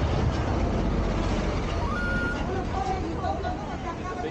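A motor vehicle's engine running close by on a city street: a steady low rumble, with a brief steady high tone about halfway through.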